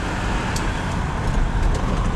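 Diesel vehicle's engine and road noise heard from inside the cab while driving in city traffic: a steady, noisy rumble.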